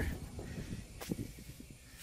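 Faint steady hiss of air moving through a rooftop package unit's return plenum, drawn in around a large flex supply duct by the running blower, with a light tap about a second in.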